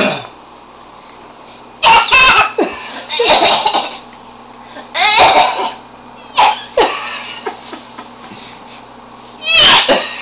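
A baby making forced throat-clearing, cough-like sounds in about five or six short bursts, a playful imitation of an adult clearing his throat rather than a real cough.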